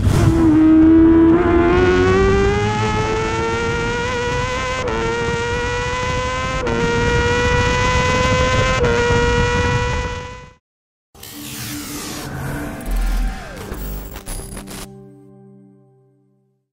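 Racing motorcycle engine heard onboard, pulling hard up through the gears. The pitch climbs steadily, with three short dips at upshifts about five, seven and nine seconds in. It cuts off suddenly, and after a short break comes a logo sting of whooshes, hits and electronic tones that fades out.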